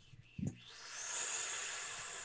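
A person's short low hum followed by a long breathy exhale into a close microphone: a hiss of about two seconds that cuts off suddenly.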